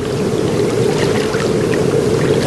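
Steady rushing water, an even sea-like wash.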